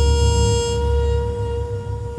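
Quiet acoustic jazz: a long held brass note, trumpet or flugelhorn, sounds steadily over a deep low bass drone.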